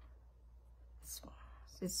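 Quiet room tone with a low steady hum, a short whispered hiss about a second in, and speech starting near the end.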